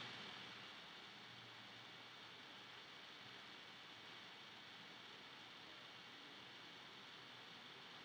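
Near silence: faint room tone with a little hiss.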